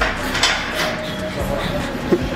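Light metallic clinks and knocks of gym equipment around a barbell rack, with faint voices in the background.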